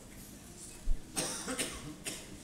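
A person coughing faintly: two short bursts a little after a second in, just after a soft thump.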